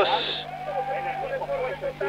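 Low, indistinct voices murmuring over a steady electrical hum, with a brief hiss right at the start.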